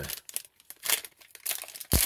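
A Topps baseball card pack's foil wrapper being torn open and crinkled by hand, in a few separate crackles with a sharp snap near the end.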